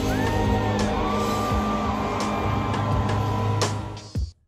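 Live band playing on a festival stage, heard from the crowd: electric guitar, bass and drums, with a few held melody notes gliding over them.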